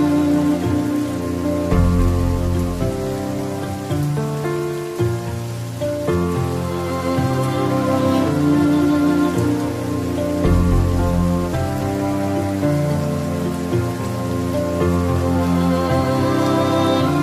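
Steady rain falling, mixed with slow, soft instrumental music of held chords that change every few seconds.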